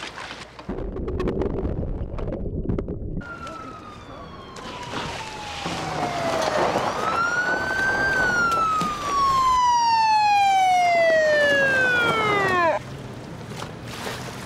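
A police car siren wailing in slow glides: a long fall in pitch, one rise, then a second long fall, and it cuts off suddenly near the end. Before it, for the first few seconds, there is a burst of rushing noise.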